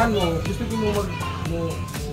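Voices talking, over background music with steady low notes.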